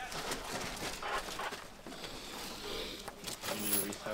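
Rustling and small clicks of gear and bags being rummaged through, with faint voices in the background late on.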